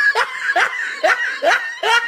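A laughing meme sound effect: a person laughs in a rapid string of short bursts, each rising in pitch, about three a second.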